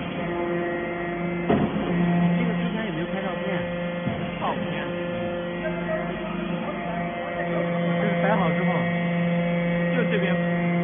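Hydraulic metal-chip briquetting press running: a steady motor-and-pump hum that swells and eases in level, with a single sharp knock about a second and a half in.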